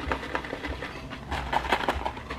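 Gift-wrapping paper rustling and crinkling softly as a wrapped present is handled, with a few light crackles in the second half.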